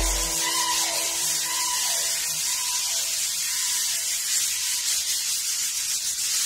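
Breakdown in an Afro-tech house DJ mix. The deep bass cuts out about half a second in and there are no drums, leaving a steady hiss-like noise wash with a few faint falling tones in the first couple of seconds.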